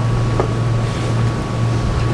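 Steady low hum with background noise, unchanging throughout, and a faint thin steady tone above it.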